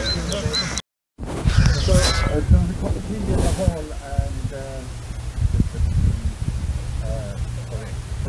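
Indistinct voices of people talking outdoors, cut off by a short dropout about a second in where the recording is spliced. In the last few seconds the voices thin out over a low steady hum.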